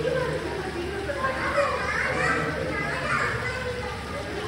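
Children's voices: several kids talking and calling out over general visitor chatter, the high voices loudest in the middle of the stretch.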